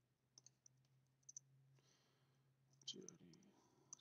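Near silence: a faint steady low hum with a few faint clicks in the first second and a half, and a softly spoken name near the end.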